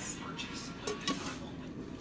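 A stainless steel pot lid being handled over pots on a stovetop, giving a few light metal clicks against low room noise.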